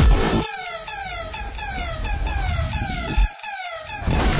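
Electronic music. About half a second in, the bass and beat drop away, leaving a run of quick falling electronic tones repeating about three times a second. The full track comes back in at the end.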